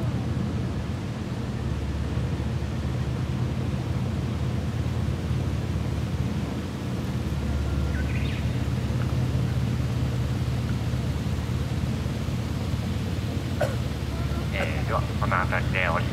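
A sightseeing river boat's engine running at a steady low drone as the boat moves along, with a person's voice starting near the end.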